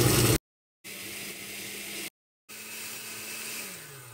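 Oster All-Metal Drive countertop blender motor running, puréeing soaked guajillo chiles with water into a sauce. The sound drops out completely twice. It then runs more quietly and steadily, and near the end the motor winds down, its hum falling in pitch.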